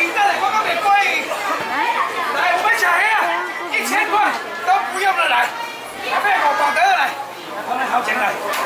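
Speech: a seafood auctioneer calling out to buyers over crowd chatter.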